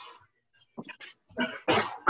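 A dog barking: several short barks, the loudest in the second half.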